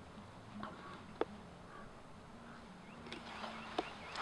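Knife blade scoring a wooden stick laid across a log, quiet except for two sharp clicks about two and a half seconds apart as the blade presses into the wood. Faint birdsong in the background.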